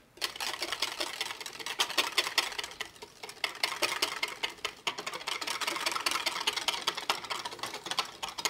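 Wire whisk beating fast in a plastic measuring jug, its wires rattling and clicking against the jug's sides as instant milk powder is mixed into water. There is a brief lull about three seconds in.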